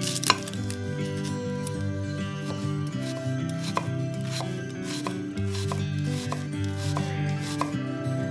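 Chef's knife chopping a red onion on a wooden cutting board: a run of irregular, sharp knocks as the blade cuts through onto the board, the loudest about a third of a second in. Soft background music plays underneath.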